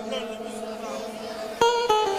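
Live band music: a held melody note fades out, then about one and a half seconds in a plucked string instrument strikes a bright note and starts a new run of notes.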